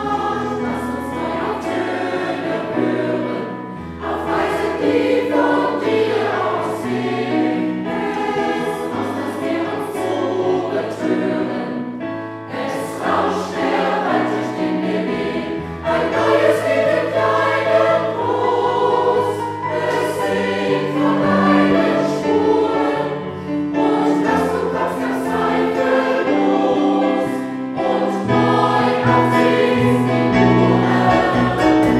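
Large mixed choir of adults and children singing a new German sacred song in harmony, with instrumental accompaniment holding low notes underneath.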